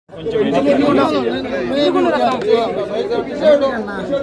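Several men talking over one another in a close crowd: overlapping chatter with no single clear voice.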